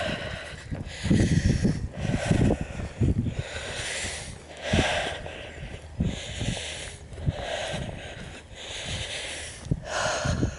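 A walker breathing heavily while climbing a grassy slope, breath after breath, with the low thumps of footfalls and the handheld camera moving.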